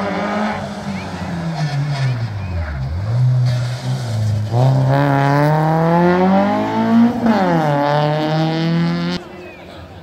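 Rally car engine, revs falling as it slows for a tight corner, then accelerating hard out of it with the revs climbing, a quick gear change about seven seconds in and the revs climbing again. The engine noise drops away suddenly near the end.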